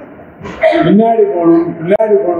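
Speech: a man talking, starting about half a second in after a brief lull.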